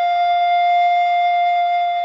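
Background music: a flute holding one long, steady note.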